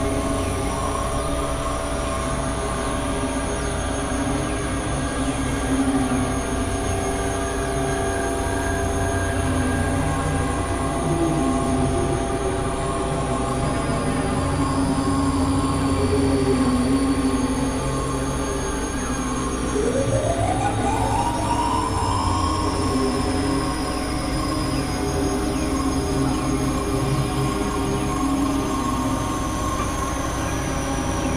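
Experimental synthesizer drone music: many layered, sustained electronic tones over a low rumbling bed. About two-thirds of the way through, one tone glides upward, while thin high tones slide slowly above.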